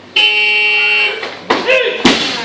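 A steady electronic competition buzzer sounds for about a second. Near the end there is a sharp thud and a short shout as the lifter drops the loaded barbell onto the platform.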